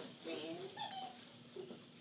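Faint, indistinct children's voices in a classroom, short bits of speech that trail off toward the end.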